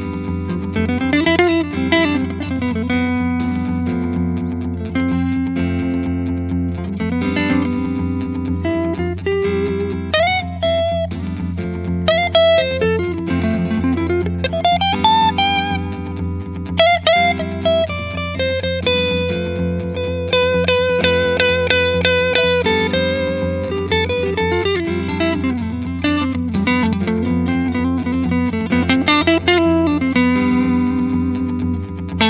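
Nazangi Thelma 42 electric guitar through an Engl amp improvising a Lydian lead with many bends and slides. Underneath, a C-major I–IV–V–I chord accompaniment sits over a steady low F pedal tone in the bass. The sharp eleven over the F gives the floaty, never-coming-home Lydian sound.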